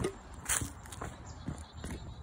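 Hurried footsteps on the ground, about two a second, with the handheld phone jostling: someone running away.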